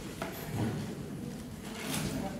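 Handling sounds as a red cloth garment is laid over a metal folding chair: a small knock about a quarter second in, then rubbing, and a short scrape near the end.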